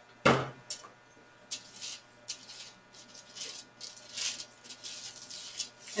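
A plastic bottle set down on a tabletop with one sharp knock, then a run of soft scraping and crinkling strokes as clear gesso is worked over the painting with a palette knife and wax paper.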